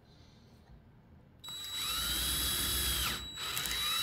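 Cordless drill boring a quarter-inch hole through the thin wooden end of a pencil box. The motor whine rises as it starts about a second and a half in, runs steadily through the wood, stops briefly near three seconds, then starts again.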